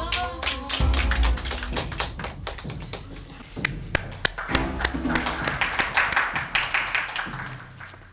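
A small group of people clapping their hands in irregular, overlapping claps, over background music.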